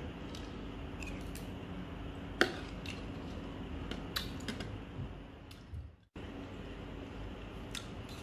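Metal spoon clinking against a ceramic bowl while eating, a handful of light, scattered clicks, the sharpest about two and a half seconds in.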